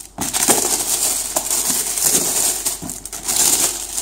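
Clear plastic shrink wrap being pulled off a cardboard box and crumpled, a continuous crinkling crackle.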